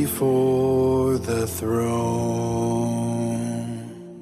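A worship song with a solo voice singing short phrases, then one long held note from about two seconds in. The music begins to fade out near the end, as a song ends.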